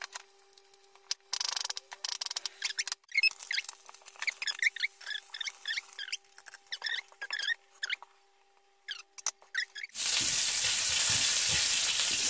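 A run of short, high chirping squeaks over a faint steady hum. About ten seconds in, sliced red onion hits hot oil in a frying pan and a loud, even sizzle starts suddenly.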